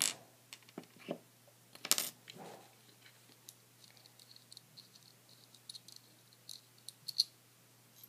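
Small clicks and knocks of a metal X-Acto craft knife and its cover being handled and fitted in the hands. The loudest knock comes about two seconds in, followed by a run of light ticks.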